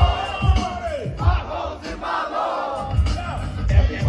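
Live hip hop music from a festival stage sound system, a heavy kick drum thumping, with a large crowd shouting along.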